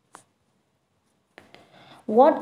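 Near silence, room tone only. There is one faint click just after the start, and a soft click and rustle near the end.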